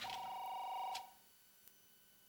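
An electronic telephone tone: two steady pitches sounding together for about a second, then cutting off to near silence.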